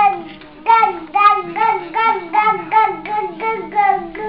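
A toddler babbling in a sing-song chant: a quick run of repeated syllables, about three a second, each dipping and rising in pitch.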